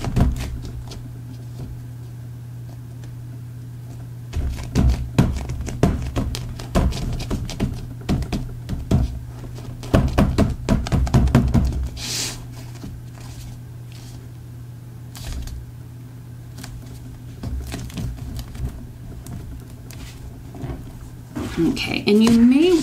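Hands pressing and handling a glued cardstock panel inside a book-cover purse: clusters of light taps, knocks and paper rustling. A steady low hum runs underneath.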